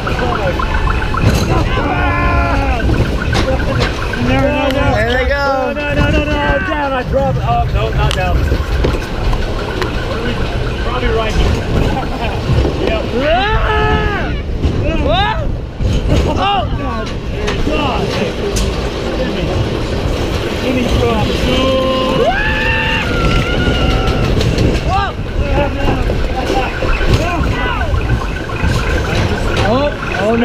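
Roller coaster ride heard from the car: a steady rumble of the car and wind on the microphone, with riders' voices whooping and calling out at intervals.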